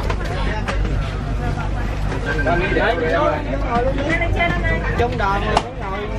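Several people talking at once in a crowded ferry passenger cabin, over a steady low hum. A short knock near the end.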